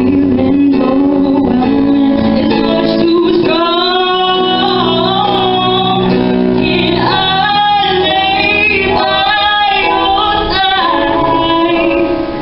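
A woman singing live into a microphone with electronic keyboard accompaniment, holding long, wavering notes from a few seconds in.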